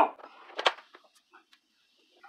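Lid of a Brentwood electric tortilla maker swung down and closed onto the dough: one sharp clack about half a second in, then a few faint clicks as it is pressed shut.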